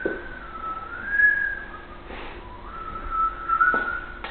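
A man whistling a slow, wavering tune in two long phrases, with a short break about halfway through.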